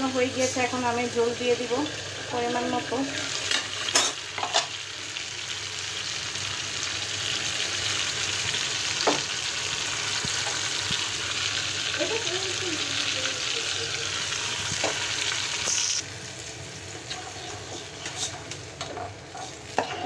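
Hilsa fish and young gourd curry sizzling in an aluminium pot, with a few sharp metal clinks. The sizzle grows a little louder, then drops off suddenly about sixteen seconds in.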